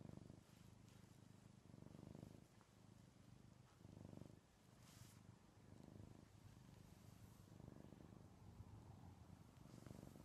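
Ragdoll cat purring quietly, a low rumble that swells and fades in a slow rhythm about every two seconds with its breathing.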